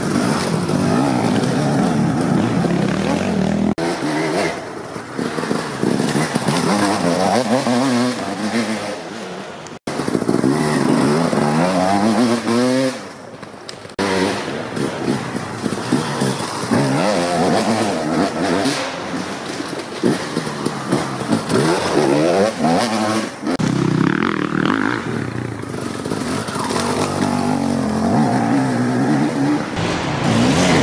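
Enduro dirt bikes racing past one after another on a forest dirt track, their engines revving up and down in pitch through the corners and gear changes.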